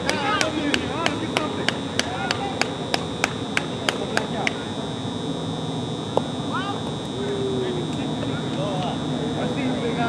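Rapid, evenly spaced hand-clapping, about three claps a second, that stops about four and a half seconds in, with faint voices behind it. A steady high-pitched whine runs underneath.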